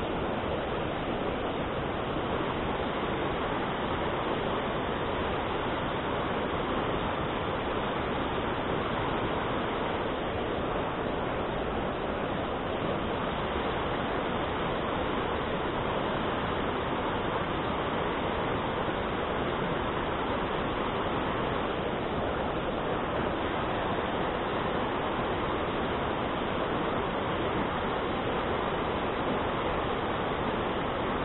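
Mountain stream rushing over rocks and through small rapids: a steady, unbroken rush of water.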